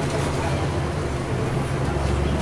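Inside the cabin of a 2009 NABI 416.15 40-foot transit bus under way: its Caterpillar C13 diesel engine runs with a steady low drone under road and traffic noise.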